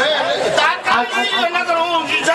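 Speech: a man speaking rapidly into a stage microphone, with no other sound standing out.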